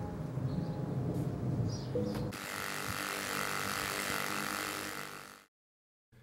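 Bench polishing machine with buffing wheels running, with a low rough rumble for the first two seconds, then a steady hum and hiss. It fades out about five seconds in, followed by a brief dead silence.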